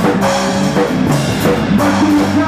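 A live band playing rock-style music with drum kit, electric bass guitar and electric guitar, with steady drum hits driving the rhythm.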